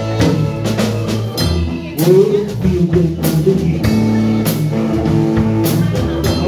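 Live band playing bluesy rock: electric guitars over a drum kit and keyboard, with a lead line bending in pitch about two seconds in.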